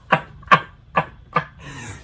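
A man laughing hard in short, separate bursts, about four of them at an even pace a little under half a second apart.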